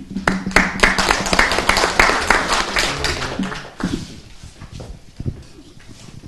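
Audience applauding, a dense patter of clapping that dies away about four seconds in.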